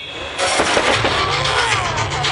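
Stage pyrotechnics, a flame jet and spark fountains, starting suddenly about half a second in with a loud, steady crackling hiss.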